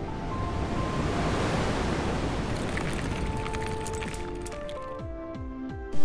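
Cinematic intro music for a logo reveal: a whooshing wash of noise that swells over the first second or so and then slowly fades, with held synth notes over it and a few falling low tones near the end.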